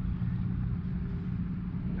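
A steady low motor hum with rumble beneath it.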